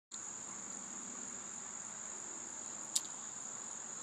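Insects, likely crickets, trilling as one steady, high, unbroken tone. A single sharp click comes about three seconds in.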